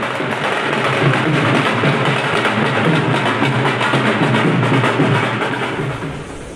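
Dhol and tasha drums playing a dense, continuous procession rhythm.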